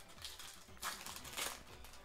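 Foil trading-card booster pack wrapper crinkling faintly as it is torn open, in a couple of brief rustles around the middle.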